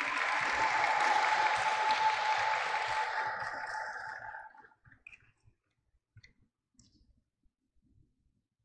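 Audience applauding after a graduate's name is called, dying away after about four and a half seconds, with a faint steady tone beneath it; then near silence.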